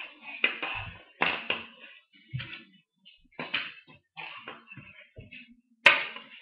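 Irregular knocks and clatters about a second apart, ending in one sharp, loud clack near the end as a hand sets a plastic Lego starfighter down on a stone countertop.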